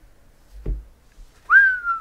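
A man whistles in amazement: one long note that jumps up sharply about one and a half seconds in and then glides slowly downward. Shortly before it, a brief low thump.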